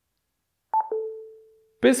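Toniebox signal tone: a brief higher electronic note drops to a lower note that fades away over about half a second. It signals that holding both ears has put the box into Wi-Fi setup mode.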